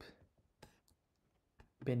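A few light clicks in the first second from working a computer, between stretches of a man's speech.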